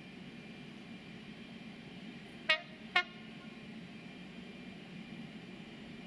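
Diesel freight locomotive's two-tone horn giving two short blasts about half a second apart, a warning to the track workers beside the line, over the steady low hum of the approaching locomotive.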